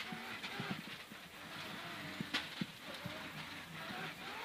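Mitsubishi Lancer Evolution X rally car's turbocharged four-cylinder engine heard muffled from inside the cabin, running at fairly low revs with a faint wavering whine, and a few sharp knocks.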